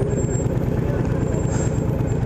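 Honda VTX 1300R motorcycle's V-twin engine idling steadily.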